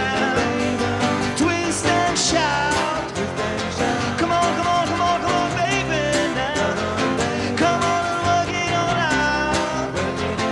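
A man singing a song to strummed acoustic guitars in a live band performance.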